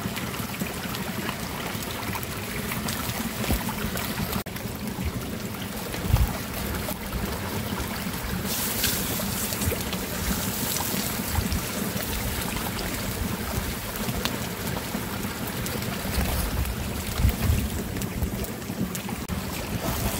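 Burgers frying in butter in a pan over a wood fire: a steady sizzle with the fire crackling beneath, and a few low bumps.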